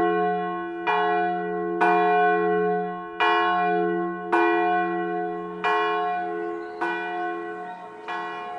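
A single church bell tolling, struck six times at intervals of a little over a second, each stroke ringing on under the next.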